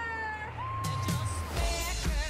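Pop music from a movie trailer: a high voice slides down and holds one long note, then a drum beat with heavy kick drums starts near the end.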